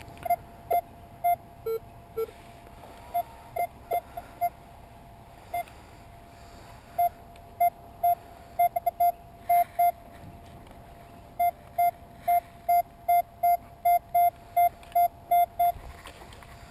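Metal detector sweeping over gravel and sounding short beeps as it picks up targets: single beeps at first, with two lower-pitched ones about two seconds in, then rapid strings of beeps, several a second, in the second half.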